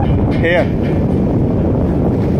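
Loud steady wind buffeting the microphone over the rush of sea water against a ship's hull. A short shouted call from a person comes about half a second in.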